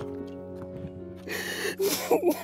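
A woman sobbing, with two sharp gasping breaths in the second half, over held notes of background music.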